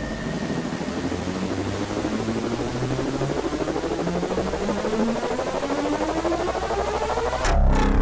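Car engine accelerating, its pitch rising steadily for several seconds, heard from inside the car. A sudden loud burst of noise comes near the end.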